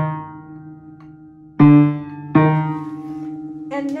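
One note of an upright piano struck twice, about a second and a half in and again just under a second later, each strike ringing on and slowly dying away. It is played as a check on damper lift after the pedal rod was adjusted to raise the dampers early.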